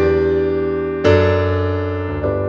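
Piano chords played slowly in a walk-up: an E minor seventh chord rings as it opens and a second chord is struck about a second in, each left to ring and fade.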